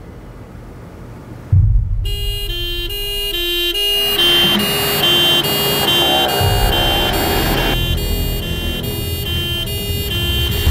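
An ambulance's two-tone siren starts about two seconds in, switching between two pitches about three times a second. Under it a vehicle's engine rumble starts suddenly, and a rush of road noise swells in the middle.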